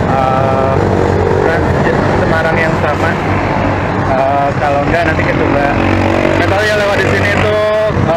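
Street traffic, motorcycles and cars passing along a busy road, as a steady rumble under a man's voice.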